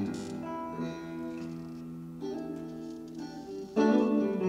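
Electric guitar playing sustained jazz chords, each left ringing before the next, with the loudest chord struck near the end.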